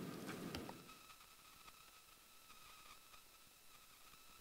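Near silence: room tone, with a few faint clicks in the first second.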